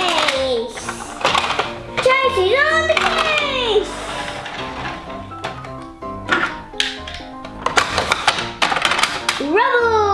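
Background music runs throughout. A child's voice glides up and down about two to four seconds in. Later there is clicking and clattering from plastic toy vehicles on the plastic track set.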